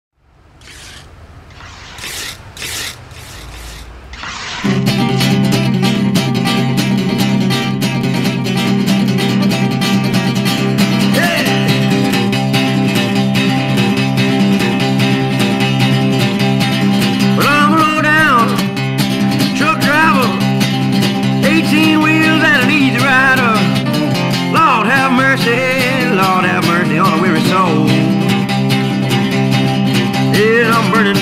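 Blues-country guitar intro played on a blue archtop electric guitar with a capo: a few soft sounds, then a steady, driving repeated riff kicks in loudly at about four and a half seconds. About halfway through, gliding high notes join over the riff.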